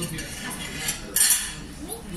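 Plates and cutlery clinking together on a restaurant table as a stack of plates is handled, with a small click just before the middle and a louder clatter just after it.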